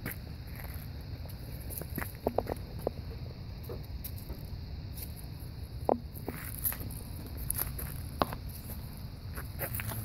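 Puppies' small paws and claws pattering on concrete and dry leaves: scattered light clicks and taps, a quick cluster about two seconds in and single sharper ones near six and eight seconds, over a low steady rumble.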